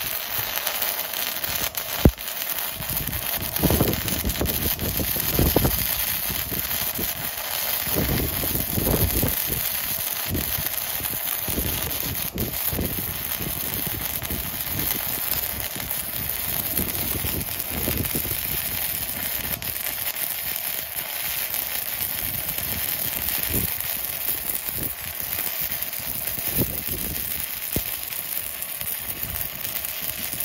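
Stick-welding arc from a small handheld stick welder set to about 100 amps: a steady crackling sizzle with irregular pops as the electrode burns along the steel plate, and one sharp pop about two seconds in.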